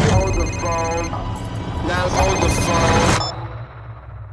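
Mobile phone ringing with an electronic ringtone in two bursts, the second ending a little after three seconds. A man's voice and low film-score rumble sound underneath.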